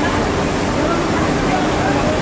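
Steady, loud background noise of a garment workroom, with indistinct voices talking in the background.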